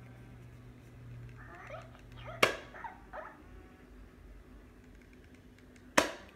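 Penguala Hatchimal toy inside its egg giving a few short electronic animal-like chirps, with one sharp knock from the egg a little over two seconds in.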